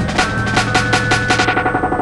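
Promo music: a rapid run of drum hits, about eight a second, over held steady notes. The drumming fades out about three-quarters of the way through while the notes carry on.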